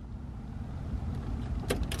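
A click, then a low hum and rumble from a 1999 Porsche Boxster that grows slowly louder as the ignition is switched on. The engine does not start.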